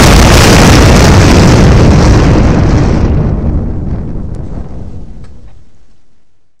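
Explosion sound effect: a loud blast that hits at the start and then dies away slowly over about five seconds.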